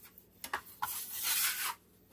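Metal dough blade (bench scraper) held flat and scraped across a granite countertop, lifting off stuck-on dough and flour. A couple of light ticks come first, then one scraping stroke of about a second.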